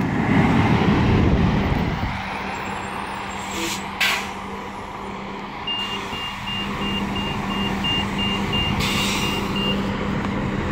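Gillig low-floor transit bus engine pulling away, loud as it passes close for the first two seconds, then a steady hum fading as it drives off. Two short hisses come about four seconds in, and a rapid high beeping starts about six seconds in.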